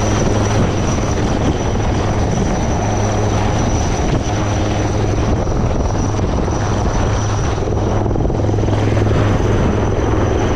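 HAL Dhruv helicopter running close by: a steady, loud low rotor drone over wide rushing noise, with a thin high turbine whine held throughout.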